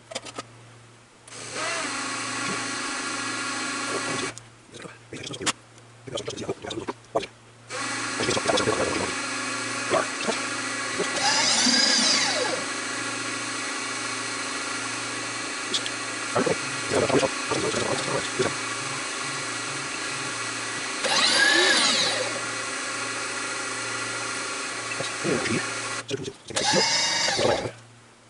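Vertical milling machine spindle running with an edge finder, a steady whine with several tones. It stops for a few seconds about 4 s in, with a few clicks, and then runs again until near the end. Twice the pitch sweeps briefly up and back down.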